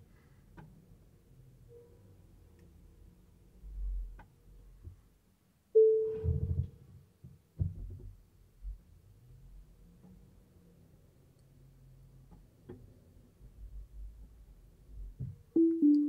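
Quiet Tesla Model 3 cabin while the car parks itself, with a faint low rumble, a short steady tone about six seconds in and two more short tones near the end.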